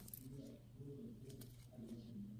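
Very quiet room tone with faint, short, low tones repeating throughout and a couple of faint clicks about a second and a half in.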